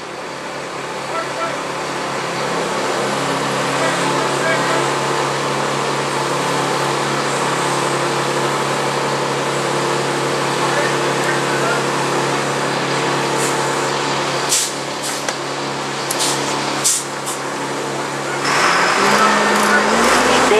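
A steady machine hum holding several unchanging tones, with a few sharp clicks about two-thirds of the way through from fitting a motorcycle brake lever onto its master cylinder.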